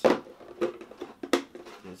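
Camera accessories and packaging being handled in a cardboard box: a few sharp knocks and clicks. The loudest comes at the start and another just after a second in.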